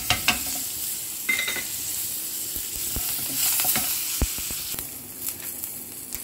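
Curry leaves sizzling in hot tempering oil in a nonstick pan, a steady hiss, with a wooden spatula stirring and giving a few sharp taps against the pan.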